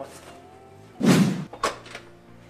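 An apartment door slamming shut: one heavy bang about halfway through, followed by a shorter, sharper second knock about half a second later.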